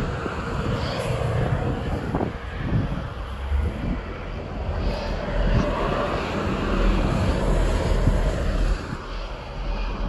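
Steady rumble of highway traffic passing close by, swelling as vehicles go past, with wind buffeting the microphone.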